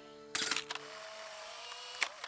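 Cartoon instant-camera sound effect: a shutter click about a third of a second in, followed by a steady whir as the photo prints out of the camera.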